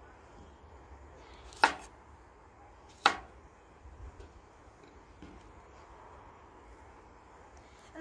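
A kitchen knife chopping through cucumbers onto a bamboo cutting board: two sharp knocks about a second and a half apart, then a couple of fainter taps.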